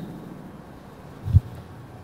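A pause in microphone-amplified speech: faint steady hiss of the sound system, with one short low thump about a second and a half in.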